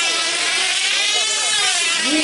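Several F2C team-race control-line models running their small diesel engines at full speed: a high, steady whine that wavers up and down in pitch as the models circle.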